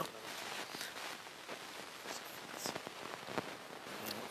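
Low, steady hiss of a hall's background noise with a few faint clicks from the Subbuteo game as figures are flicked at the ball.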